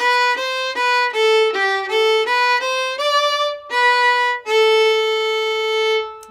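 Solo fiddle playing a tune's opening phrase slowly in G, about a dozen separately bowed notes stepping up and down, ending on a longer held note.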